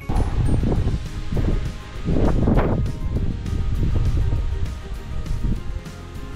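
Background music with wind buffeting the microphone, a rough low rumble that sets in suddenly and swells strongest about two seconds in.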